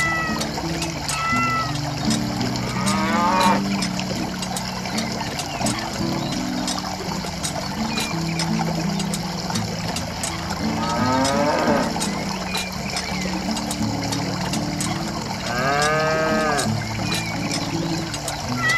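Cattle mooing three times, about 3, 11 and 16 seconds in, over soft background music with a slow stepped melody. Short high chirps come near the start and the end.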